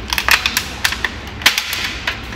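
A quick, irregular series of sharp clicks and taps from hard objects being handled, about ten in two seconds, the loudest about a second and a half in.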